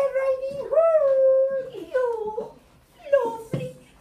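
A person's voice imitating a wolf: about four drawn-out, wavering howls and whines, the longest held for about a second.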